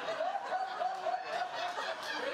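People laughing: one high-pitched laugh runs in quick wavering pulses over other laughter.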